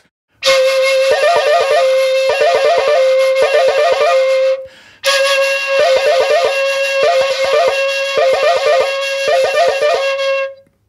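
Shakuhachi playing the koro koro exercise with six changes: a steady held note broken again and again by quick bursts of the rattling koro koro alternation between two fingerings. It comes in two phrases, with a short break for breath about halfway.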